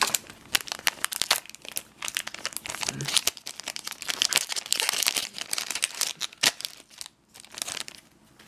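A Buddyfight trading-card booster pack's foil wrapper being torn open and crinkled by hand: a dense run of crackles and rips, with a short pause about seven seconds in.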